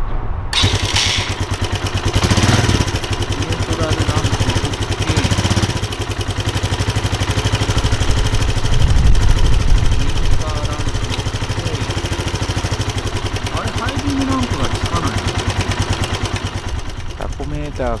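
Suzuki GN125H's single-cylinder four-stroke engine idling with a fast, even beat, coming in about half a second in and a little louder for a couple of seconds near the middle.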